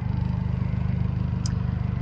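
Steady low rumble of a running car heard from inside its cabin, with one faint click about one and a half seconds in.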